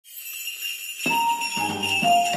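Jingle bells ringing in a music track, with instruments coming in about a second in and playing a melody over a low bass line.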